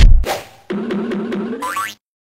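Comic transition sound effect under a title card: a heavy bass hit, then a wavering springy tone that climbs slowly in pitch and sweeps up before it cuts off abruptly.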